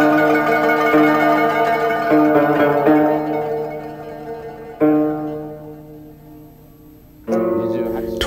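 Background music: a plucked zither-like string instrument playing slow single notes about a second apart, each ringing on and dying away. The last note fades out over about two seconds, and a new musical sound comes in near the end.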